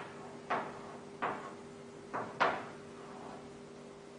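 Chalk striking and stroking a blackboard as a figure is drawn: four short sharp knocks, the last two close together, each fading quickly.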